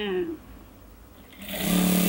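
Juki industrial sewing machine running a short burst of stitching, starting about a second and a half in.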